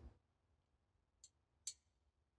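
Near silence, broken by two short, high clicks near the end, the second louder.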